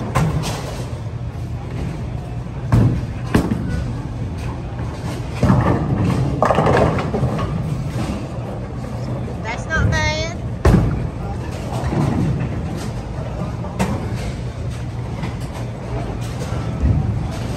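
Bowling alley din: background voices and music, with several sharp crashes of balls striking pins on nearby lanes, the loudest about three and eleven seconds in. A brief warbling high tone sounds near ten seconds.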